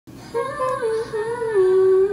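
A woman's voice singing a wordless melody. It starts about a third of a second in, steps down in pitch and ends on one long held note.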